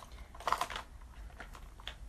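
A few light clicks and a short rustle about half a second in: handling noise of small objects being moved or tapped.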